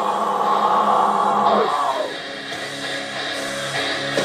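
Heavy rock music with distorted guitars, loud and continuous. A vocal sounds over it for about the first two seconds.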